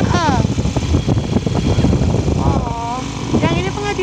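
Engine and road noise from the vehicle the recording is made from, a dense low rumble while it drives along, with a voice speaking briefly near the end.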